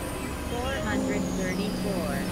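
Layered experimental electronic sound: broken fragments of a spoken voice over synthesizer drones and a constant low noisy rumble. A steady low tone enters about a second in, and a high tone steps down in pitch near the end.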